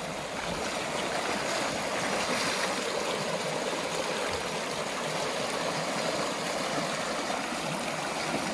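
Shallow creek water rushing over a rocky riffle: a steady, even wash of water.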